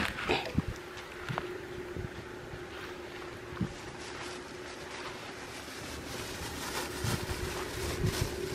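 A steady low droning hum under a haze of wind noise on the microphone, with a few soft knocks and rustles in the first few seconds as cloth brushes close past the microphone.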